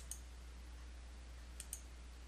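Faint computer mouse-button clicks: a pair right at the start and another pair about a second and a half in.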